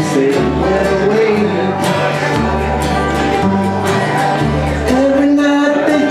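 Live bluegrass band playing an instrumental break: upright bass notes changing about once a second under strummed acoustic guitar, with banjo and mandolin.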